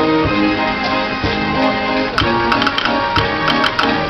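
Dutch street organ (draaiorgel) playing a Sinterklaas song: held melody and accompaniment notes, joined by a run of percussion strikes about two seconds in.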